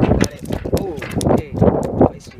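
A black sea bass flopping on the pier deck, its body slapping the surface in a run of quick sharp knocks, under a person's voice.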